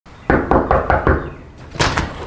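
Knocking on a front door: five quick raps about a fifth of a second apart, then one more sharp hit near the end.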